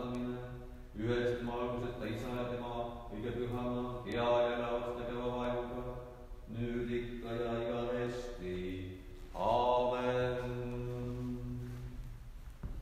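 A man chanting an Orthodox Akathist in a single voice, holding near-steady reciting tones in short phrases with brief breaks. The last phrase dies away near the end.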